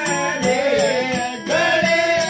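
Devotional bhajan: a man singing a wavering melody over a harmonium's held notes, with a large two-headed hand drum and other percussion keeping a steady beat of about three strokes a second.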